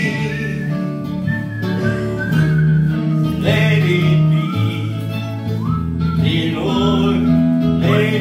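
A man singing live into a microphone, holding and sliding between notes, over long sustained bass notes and chords from a Korg Triton Studio keyboard.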